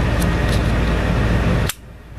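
A Sarsılmaz SAR9 Platinum pistol being dry-fired: its trigger is pulled slowly through the take-up, with faint clicks, until it breaks with a sharper click near the end. Under it is a steady hiss with a low hum, which cuts off suddenly at the same moment.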